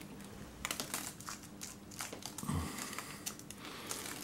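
Hands crumbling potting compost into a small plant pot over a paper sheet: faint scattered rustles and small crackles.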